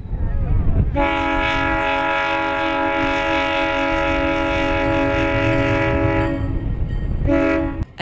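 Wisconsin & Southern diesel locomotive sounding its air horn: one long steady blast lasting about five seconds from about a second in, then a short blast near the end. A low rumble from the moving train runs underneath.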